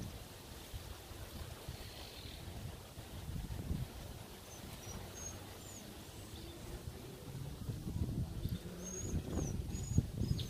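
Outdoor ambience: a steady low rumble with a few faint, short high bird chirps, about halfway through and again near the end.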